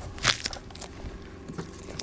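Wooden hive inner cover being handled above the frames: a short scraping rush about a quarter second in, then a few light knocks.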